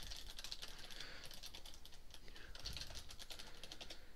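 Faint, rapid clicking of typing on a computer keyboard.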